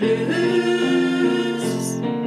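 Women's vocal group singing held notes in close harmony, the chord shifting about a second in.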